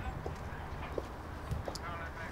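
Footsteps on outdoor ground, with the sharp clicks of a woman's high heels at an irregular pace, over a low outdoor background rumble.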